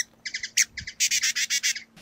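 Small songbird chirping: short quick clusters of high chirps, then a faster, continuous run of chirps through the second half that stops just before the end.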